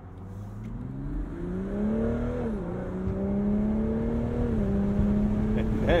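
BMW Z4 M40i's turbocharged B58 inline-six accelerating under extra throttle, getting louder as it pulls. Its pitch climbs, then drops at an upshift of the 8-speed automatic about two and a half seconds in, climbs again and drops at a second upshift a couple of seconds later.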